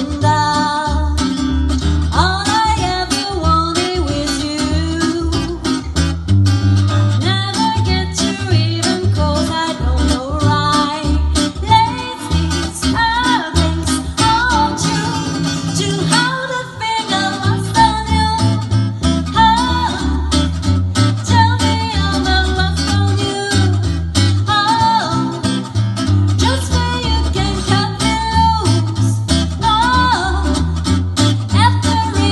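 Live swing band music: a woman singing over guitar and a plucked double bass keeping a steady walking line, with a brief break about halfway through.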